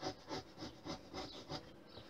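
Lino cutter scraping along a wooden strip, taking shavings out to deepen a wiring groove: a run of short, faint scrapes, several a second.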